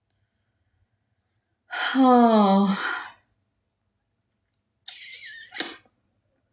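A woman's voice: a drawn-out vocal sound about two seconds in, its pitch falling, then a quieter breathy, hissing exhale near the end with a small click.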